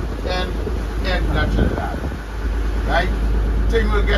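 A fishing boat's engine running with a steady low hum, under indistinct talk.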